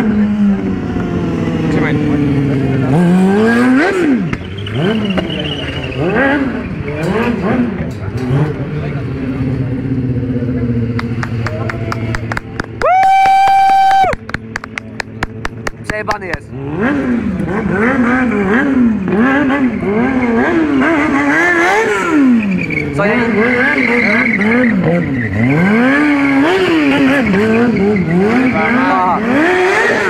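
Sport motorcycle engine revving up and down again and again during stunt riding, its pitch swinging rapidly. About thirteen seconds in, a loud high steady tone sounds for about a second, followed by a quick run of clicks.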